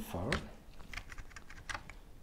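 Keys of a vintage Apple Keyboard II being pressed one after another to test that each registers: a quick, uneven run of short plastic key clicks.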